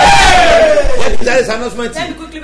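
A man's loud, long drawn-out cry, a single held voice falling steadily in pitch, breaking off a little over a second in, followed by a few shouted words.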